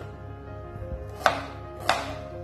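Two sharp knife strikes on a plastic cutting board, slicing through a red onion, the first a little past halfway and the second near the end, over soft background music.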